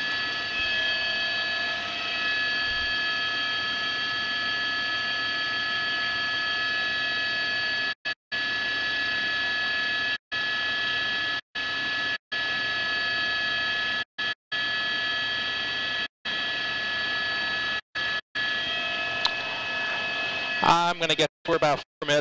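News helicopter engine and cabin noise: a steady hiss carrying a high whine of several pitches. The feed cuts briefly to silence about ten times in the second half.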